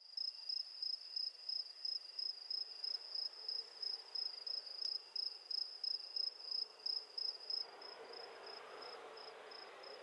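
A cricket chirping at night: a high, thin trill pulsing about three times a second, growing fainter near the end as faint low background noise rises.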